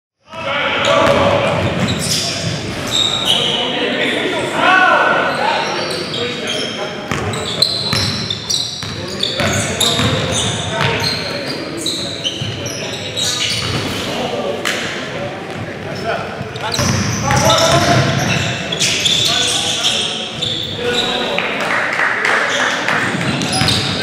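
Basketball bouncing on a hardwood gym floor during a game, with many short sharp bounces, mixed with players' voices and the echo of a large gym hall.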